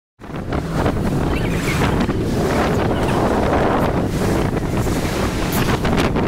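Wind buffeting the microphone over small waves washing onto a pebble lakeshore: a steady, fairly loud rushing noise with a heavy low rumble. It cuts in suddenly out of silence just after the start.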